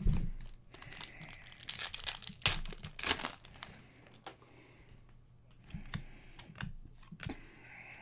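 Foil wrapper of a hockey card pack crinkling and tearing as it is opened by hand, with a sharp knock at the start and the loudest crackling between about one and a half and three seconds in, then scattered softer crackles and clicks of cards being handled.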